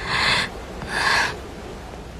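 A person breathing hard and out of breath: two loud, rasping breaths about half a second apart.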